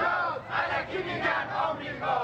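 A crowd of marching protesters, mostly men, shouting slogans together in loud, rhythmic chants.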